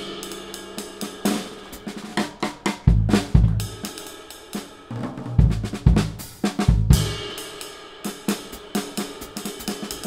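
Drum kit played solo: snare and tom strikes with cymbal and hi-hat, and deep bass drum hits from about three seconds in.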